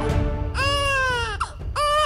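A baby crying: one long falling cry in the middle and another starting near the end, with a short catch of breath between, over background music with held notes.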